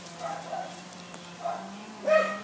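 A dog barking faintly a few times over a steady low hum.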